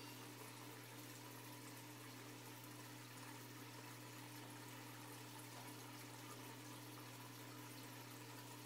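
Turtle tank's water filter running: a faint, steady hum with a soft wash of moving water.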